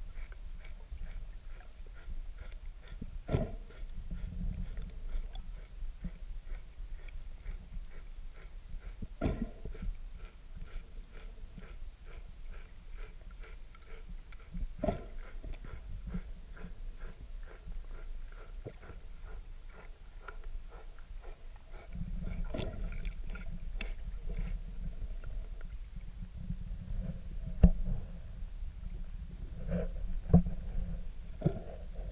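Underwater sound picked up by a submerged camera: a low rumble of water moving against the camera that comes and goes, with scattered sharp clicks and knocks, the loudest a single sharp knock near the end.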